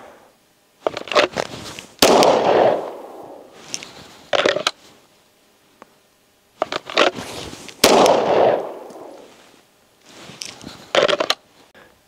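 Pistol shots on an open range, the two loudest reports about two seconds and about eight seconds in, each trailing a long echo off the surrounding hillside. Shorter sharp cracks come in quick pairs between them.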